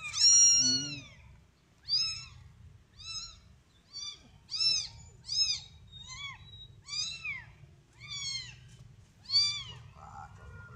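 A very young, motherless black-and-white kitten mewing again and again: short, high-pitched mews that rise and fall, about one or two a second, the first the loudest.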